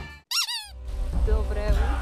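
Band music fades out, then a single short, high squeak rises and falls in pitch, followed by outdoor background with faint voices and low wind rumble.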